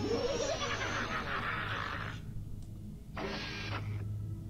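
Cartoon energy-blast sound effect: a rushing blast with sweeping rising and falling pitches for about two seconds, then a brief second rush of noise near the end, over a steady low hum.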